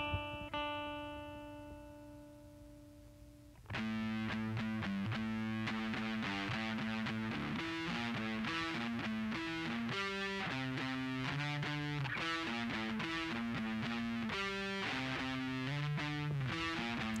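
Distorted electric guitar, a Gibson Les Paul Classic played through a Diezel VH4-2 high-gain pedal into an Orange Terror Stamp amp before its tube-gain mod. A held chord rings out and fades for about three and a half seconds, then a steady riff of changing notes and double-stops runs on.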